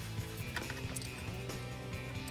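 Quiet background music with a few faint clicks of a crochet hook working fine wire.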